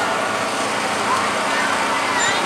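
Steady street noise as a pickup truck rolls slowly past, with faint distant voices in the background.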